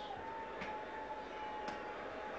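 Two faint clicks of a tower space heater's top control buttons as the heater is switched off, over a faint steady high tone.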